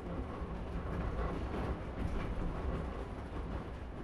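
A train running on rails: a steady, even running noise with no distinct beat, much quieter than the narration around it.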